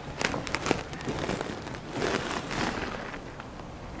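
Scattered light clicks and small rustles from a laptop's trackpad and keys being worked, over a steady hiss of room noise.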